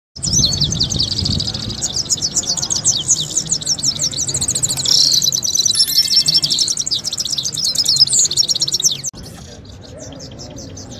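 Several goldfinches singing at once, a dense, rapid twittering that cuts off abruptly about nine seconds in.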